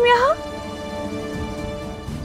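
Drama-serial background music holding a sustained chord, after a woman's voice rises briefly in the first moment.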